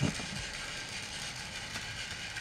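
Steady whir of a small battery-powered toy train motor and its gears running along the track.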